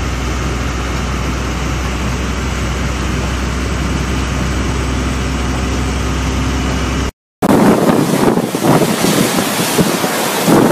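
Steady engine and road rumble inside a moving vehicle. About seven seconds in the sound cuts out briefly, then cyclone wind takes over, gusting hard against the microphone in rising and falling surges.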